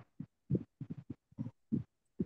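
Faint, choppy fragments of a voice coming through a video call: about ten short, muffled bursts cut apart by dead silence, as if the connection or a noise gate is chopping up the sound.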